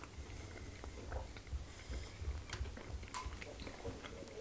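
Close-miked chewing of fufu and meat, with scattered small wet clicks from the mouths.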